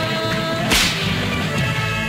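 A single sharp whip crack about two-thirds of a second in, over film-song music with held notes.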